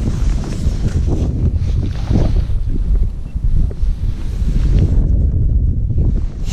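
Wind buffeting the microphone of a body-worn action camera: a loud, uneven low rumble.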